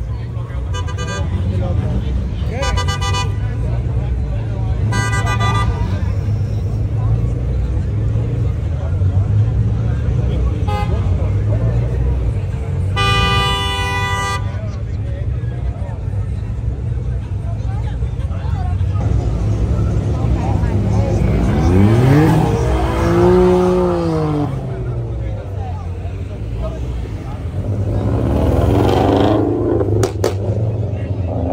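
Car horns toot in short beeps three times in the first five seconds, then give a longer blast about 13 seconds in, over the low rumble of idling cars. About 20 seconds in an engine revs up and falls back, and another rev rises near the end.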